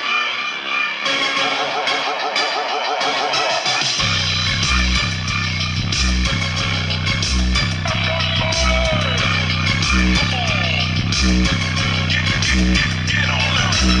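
Bass-heavy electronic music played through a bare 3-inch Logitech woofer driver with no enclosure, its cone making large excursions. The deep bass beat drops in about four seconds in and then pulses steadily.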